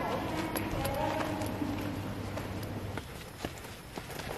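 Footsteps walking down outdoor steps, a few scattered light knocks. Faint voices of other people murmur in the background during the first couple of seconds.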